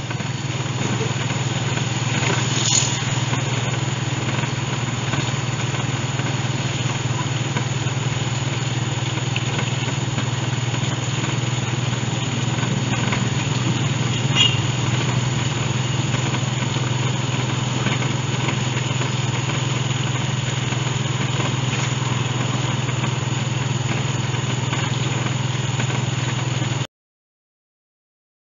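Motorcycle engine of a Philippine tricycle (a motorcycle with a sidecar) running with a steady, low drone while riding along a street.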